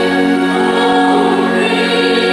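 Mixed gospel choir singing, holding long sustained notes in harmony.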